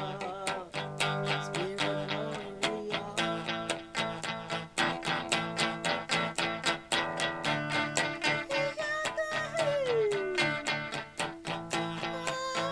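Electric guitar strummed in a quick, steady rhythm, with a wordless sung line over it that holds a note and then slides down in pitch near the end.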